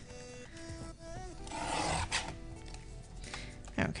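Cardstock panels being handled and rubbed, a soft paper rustle that is loudest around the middle, under faint background music.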